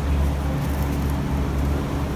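A steady low mechanical hum with a deep rumble underneath that swells and eases unevenly, as from machinery running in a large room.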